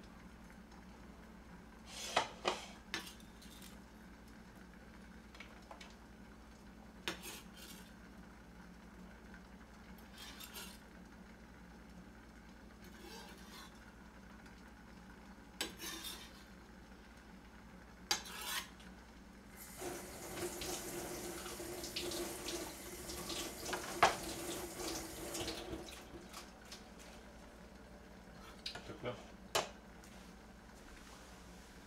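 Scattered knocks and clinks of a kitchen knife, plate and plastic cutting board as diced onion is scraped off the board onto a plate. About 20 seconds in, a tap runs for about six seconds, followed by a few more clinks near the end.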